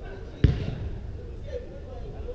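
A football struck once, a sharp thud about half a second in that echoes around a large indoor hall. Players' voices call in the background.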